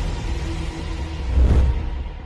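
Deep bass rumble from an electronic intro sting, swelling about a second and a half in and then fading away as the music ends.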